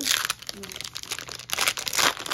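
Foil hockey card pack wrapper crinkling as it is torn open and handled, in bursts of rustling at the start and again about a second and a half in.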